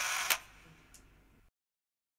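Camera-shutter style sound effect: a short hiss ending in a sharp click, then fading away, with one faint tick about a second in.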